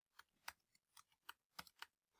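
Faint computer keyboard typing: about seven quick, irregular keystrokes.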